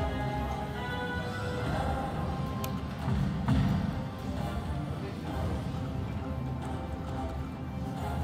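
Video slot machine's electronic game music and jingles as its reels spin, over a dense casino background, with a brief louder accent about three and a half seconds in.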